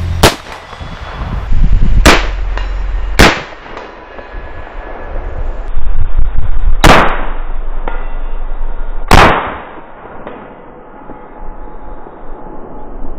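Five rifle shots from AR-pattern rifles in .223 Wylde and .50 Krater, the .50 Krater fitted with a muzzle brake. The shots come at uneven intervals: just after the start, near two and three seconds, then near seven and nine seconds. Each is a sharp report with a fading ring.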